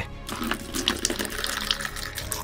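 Liquid being poured into a bucket: a steady rushing splash, with background music underneath.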